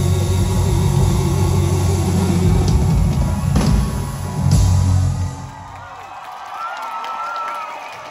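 Live band playing loudly over an arena sound system, with heavy drums and bass guitar. The music drops away about five seconds in, leaving a much quieter stretch with a faint held tone.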